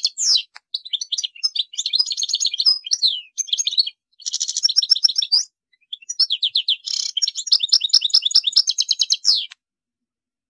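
European goldfinch (chardonneret) singing: fast, high twittering and trilled phrases with short pauses between them, stopping near the end.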